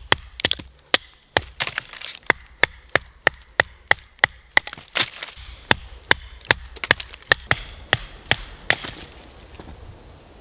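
Wooden stick being struck over and over with a tool, sharp wooden knocks about three a second that stop near the end.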